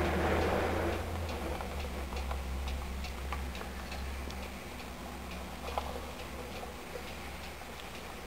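A run of small, light ticking clicks, roughly two a second, over a low hum that fades out in the first second.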